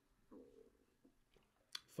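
Near silence: room tone while a man sips soda from a glass, with a faint short mouth sound about a third of a second in and a small click just before the end.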